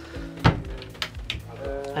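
A sharp click about half a second in and a lighter one about a second in, from the catch of a wooden cabin door being opened, over background music with a steady beat.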